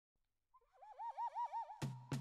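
Background music starting up: a warbling, bird-like whistle that wavers up and down about five times a second, then sharp percussive strikes near the end as the track gets going.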